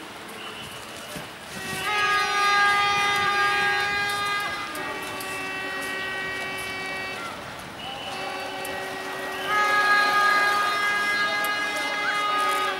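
Long, steady horn-like tones sounded as several held notes of two to three seconds each, the pitch shifting slightly from note to note. The last note, near the end, is the loudest.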